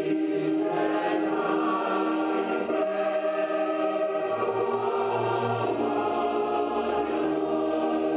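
A choir singing a slow piece in long, held notes.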